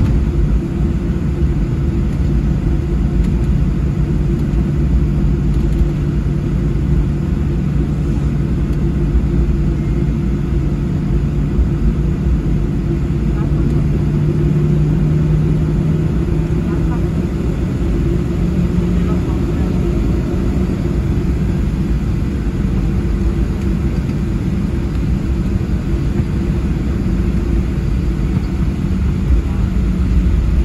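Boeing 737-700 with its CFM56 engines at taxi power, heard from inside the cabin: a steady low rumble with a hum that edges up in pitch through the middle.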